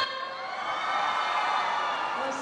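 Audience cheering and screaming, a sustained sound that sinks slowly in pitch.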